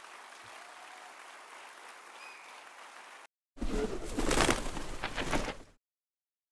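Audience applauding steadily for about three seconds, then a sudden cut and a short, loud, rushing burst of sound lasting about two seconds.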